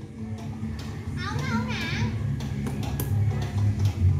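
Background music with children's voices around, and a child's voice calling out briefly just over a second in, over a steady low hum.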